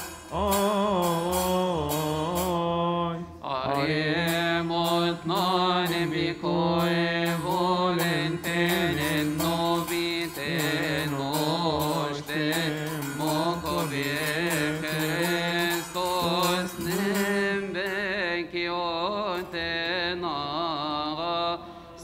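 Coptic Orthodox deacons chanting a liturgical hymn together, in long ornamented melodic lines with brief pauses between phrases.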